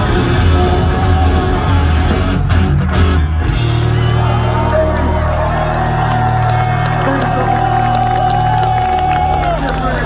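Live punk rock band with distorted guitars, bass and drums playing loud, then about three and a half seconds in settling into one long held final chord with a sustained higher note over it, which cuts off near the end.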